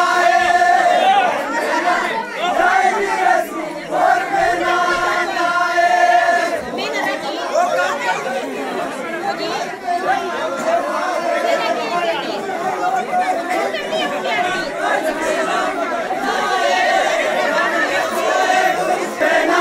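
A group of men singing a Pahadi folk chant together in long held notes, mixed with crowd chatter. The held singing comes near the start, again around the middle of the first half, and once more near the end, with looser talk and shouts in between.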